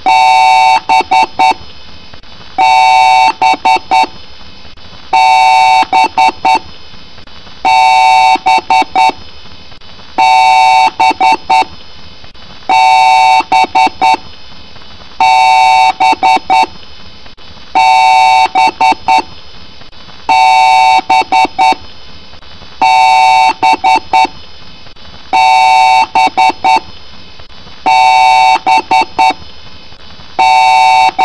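A loud, harsh electronic alarm tone repeating about every two and a half seconds: each cycle is a held tone of just over a second followed by a quick burst of four or five short beeps.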